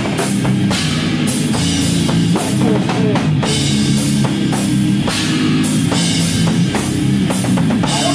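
Heavy hardcore band playing an instrumental passage live: a drum kit with cymbal crashes about twice a second, over bass guitar.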